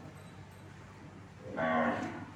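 An Indian desi (zebu) cow mooing once, a short loud call that begins about one and a half seconds in.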